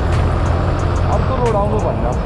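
Yamaha sport motorcycle being ridden at about 45 km/h: a steady low engine and wind rumble on the onboard microphone.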